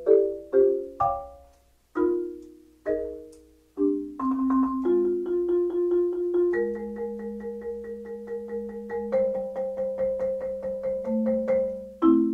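Wooden-bar marimba struck with four Mike Balter Titanium Series 323R mallets: a few separate chords that ring and die away, then from about four seconds in a rapid roll that holds sustained chords, changing chord twice.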